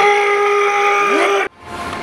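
A man's loud, sustained yell on one steady pitch, held for about a second and a half and then cut off abruptly, as if straining through the last rep of a heavy leg set.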